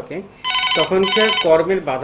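Telephone ringing: two short ring bursts, one right after the other, with a voice underneath.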